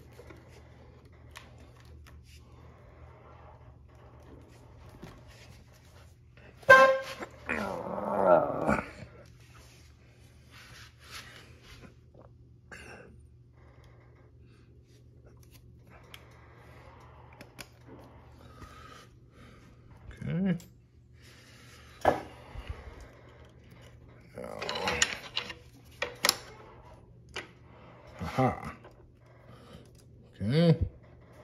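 Hand-tool work on a dirt bike's frame: a few sharp clicks and knocks of a screwdriver and metal parts over a steady low hum, broken by several short, unclear voice sounds.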